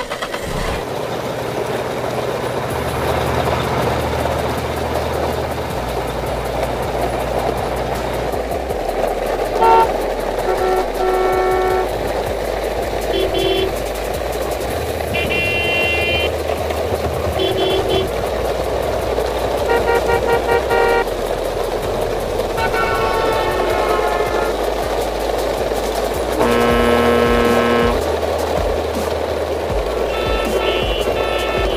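Plastic toy trucks rolling over gravelly dirt in a towed convoy, giving a steady rushing crunch of wheels. About ten seconds in, short vehicle-horn toots start and come about eight times, some single and some in quick pairs, over a low steady music bass line.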